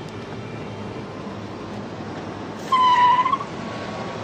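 Steady city-street traffic ambience, a constant low rush of noise. About three seconds in, a short high tone sounds briefly, wavering slightly in pitch, then fades.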